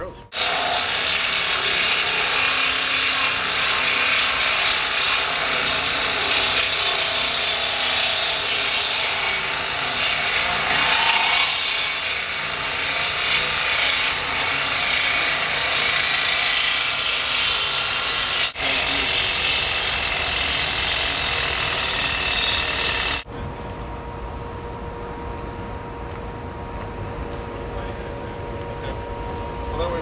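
Handheld power saw cutting through a steel beam flange to remove a sample, a loud, steady hissing cut with a brief break about 18 seconds in. It stops suddenly about 23 seconds in, leaving a quieter steady hum.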